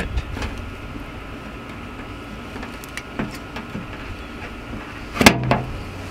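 A few faint clicks, then a sharp snap about five seconds in as a glued-on chrome Harley-Davidson emblem is pried loose from a pickup's painted fender and breaks free of its adhesive.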